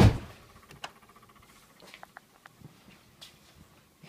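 A single loud thump right at the start, then faint scattered taps and clicks of footsteps and the phone being handled while walking.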